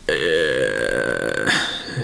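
A person's drawn-out vocal sound, held for about a second and a half and then breaking off.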